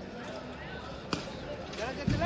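Sports-hall background of faint voices, with one sharp slap-like impact about a second in and voices calling out with rising pitch near the end.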